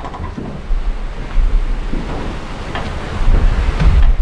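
Low, wind-like rumbling noise on the microphone, swelling about a second in and again near the end.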